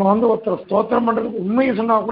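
A man's voice reciting in a chanting, sing-song tone: phrases held on a fairly level pitch with small rises and falls, broken by short breaths.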